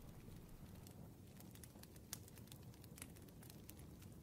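Faint crackling of a wood fire, irregular small pops and snaps over a soft steady hiss of rain.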